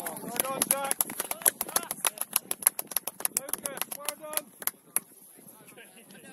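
A few spectators clapping rapidly and irregularly close to the microphone, mixed with short shouts of cheering. The clapping and shouting die away about five seconds in.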